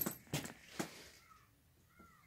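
A couple of light knocks about half a second apart as a person moves close to the camera, then near silence.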